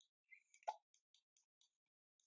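Near silence broken by faint, light ticks of a stylus writing on a tablet screen, with one short soft pop about two-thirds of a second in.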